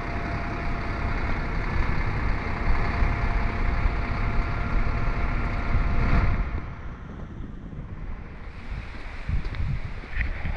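A vehicle engine idling, with a steady hum, under wind buffeting the microphone. About six seconds in the engine hum drops away and leaves quieter wind noise.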